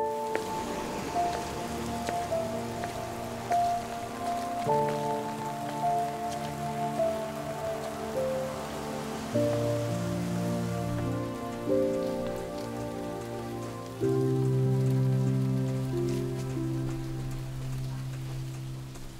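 Steady rain falling, under a slow music score of held chords and a simple melody whose notes change every few seconds.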